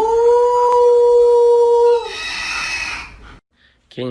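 A long howl that rises into one steady held note for about two seconds, then fades, followed by a fainter, higher sound and a short silence near the end.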